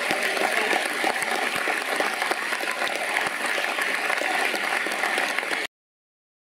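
Large audience applauding steadily, a dense mass of clapping that cuts off suddenly near the end.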